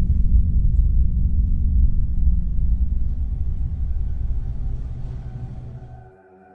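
A deep, steady rumble that fades out over the last few seconds.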